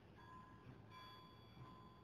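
Near silence: quiet room tone with a few faint short high tones, about a quarter second in and again around one second in.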